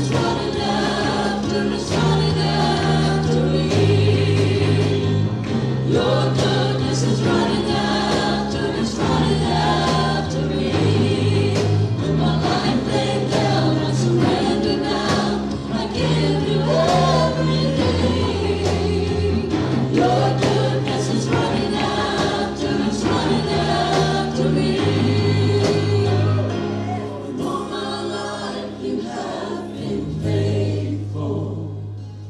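Church worship music: a band and a group of singers performing a gospel-style worship song over a steady beat, the bass notes changing every second or two. It gets slightly quieter near the end.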